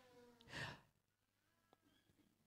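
Near silence, broken about half a second in by one short breath into the microphone.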